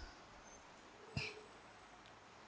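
Near silence: room tone, broken by one brief faint sound a little over a second in.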